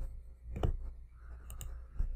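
Sharp clicks from a computer's keys and mouse, one about half a second in and a lighter pair about a second later, over a low steady hum.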